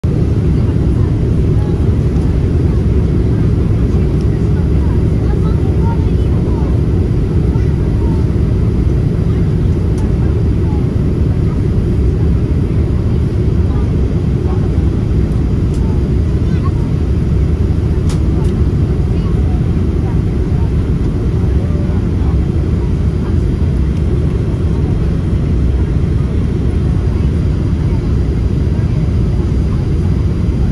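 Steady cabin noise of a Boeing 787-8 Dreamliner in flight, from the airflow and its GEnx-1B engines, strongest in the low pitches and unchanging throughout. A couple of faint clicks sound around the middle.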